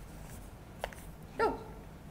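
Quiet room tone with a small click about a second in, then a woman's short exclamation, 'oh', falling in pitch.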